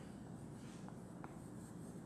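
Faint chalk writing on a blackboard, with two short sharp taps of the chalk about a second in, over a low steady room hum.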